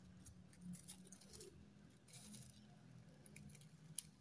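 Near silence: faint rustles and light handling of paper, with a soft low background hum.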